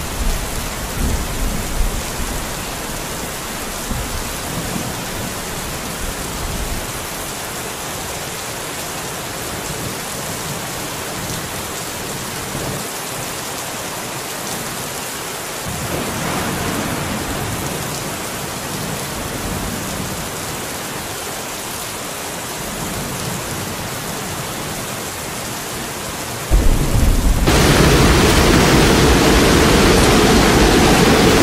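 Steady rushing noise of a brown floodwater torrent and rain. The noise shifts about halfway through and jumps sharply louder, with a deep rumble, a few seconds before the end.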